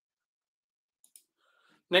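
Near silence, broken about a second in by two faint clicks in quick succession; a man starts speaking at the very end.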